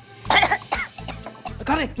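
A woman coughing and clearing her throat, choking on a sip of water, with a couple of sharp coughs about a quarter to one second in, over background music.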